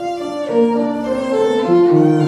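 Violin and grand piano playing together: the violin moves through a line of bowed notes, with piano chords beneath that come in more strongly near the end.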